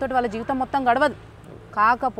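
A woman speaking in an interview, with a short pause a little past the first second.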